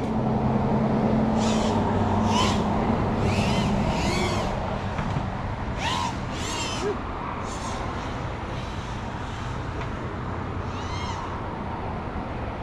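FPV freestyle quadcopter's motors and propellers buzzing under a steady rush of noise, with short whines that rise and fall again and again as the throttle is punched and eased.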